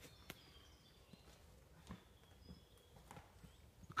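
Near silence: faint outdoor woodland ambience with a few scattered soft clicks.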